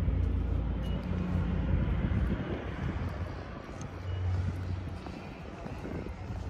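Low, steady engine rumble of a motor vehicle, strongest in the first two seconds and swelling again about four seconds in.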